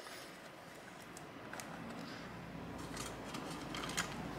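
Faint handling sounds from hands working at a laptop's metal bottom cover, with a few light clicks and a small knock near the end.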